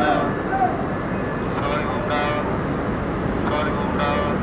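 Steady, loud noise of road traffic and heavy vehicles, with indistinct voices about two seconds in.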